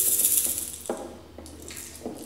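The last strummed chord of a ukulele dies away, followed by a few soft clicks and knocks of hands moving on the instrument.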